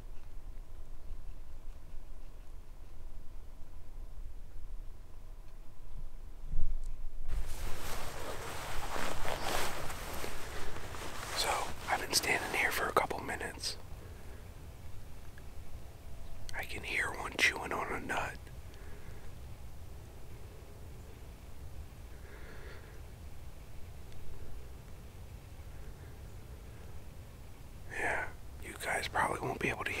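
A man whispering in short, spaced-out phrases, with long quiet stretches between them that carry only a low rumble.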